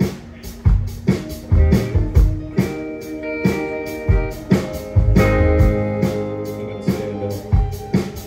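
Live band playing through the stage PA: drums, bass and guitars, with drum strokes under sustained guitar chords. The band gets louder and fuller about five seconds in.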